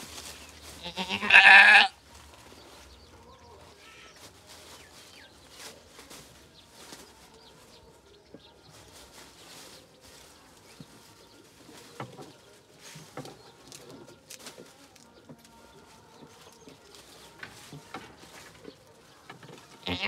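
A doe goat in labour lets out one loud, drawn-out bleat about a second in, lasting about a second and a half. After it there are only faint small clicks and rustles.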